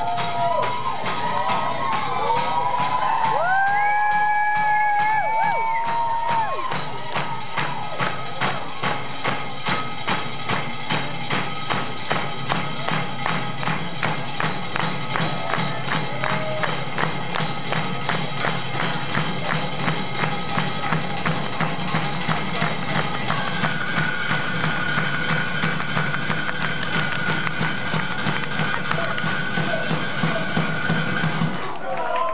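A live rock-band drum line: several drummers striking drums and percussion in a steady, even beat. Crowd whoops and cheers ride over the drumming in the first few seconds, and a held high tone joins the beat near the end.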